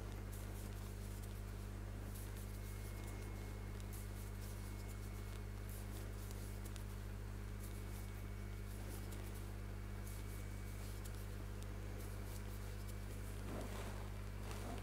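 Quiet scratchy rustling and light ticks of a metal crochet hook pulling cotton yarn through single-crochet stitches, over a steady low hum.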